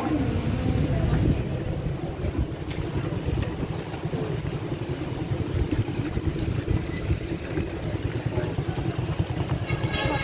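Wind buffeting a handheld phone's microphone: a low, uneven rumble that runs on with no break.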